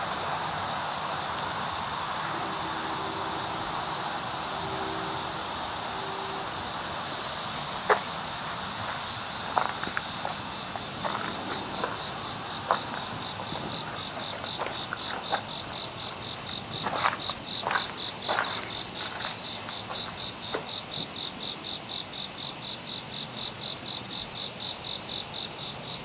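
Insects chirping steadily in grass, with a regular pulsed chirp of about four pulses a second joining from about halfway through. A few scattered light knocks come through the middle.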